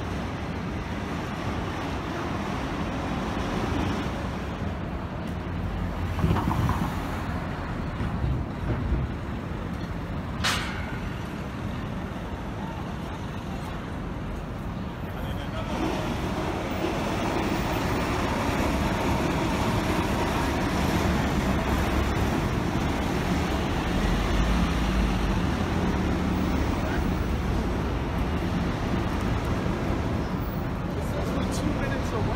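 Busy city street ambience: traffic and the chatter of passing pedestrians, with one sharp click about a third of the way in. The din grows louder about halfway through.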